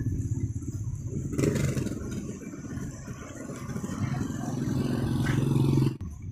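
Motorcycle engine running with a rapid low pulse that fades over the first second or so, a short clatter, then a steadier low engine hum that grows louder toward the end.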